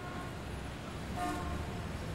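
City traffic ambience at the start of a dance-pop record: a steady low rumble of traffic with a short car-horn toot a little past the middle.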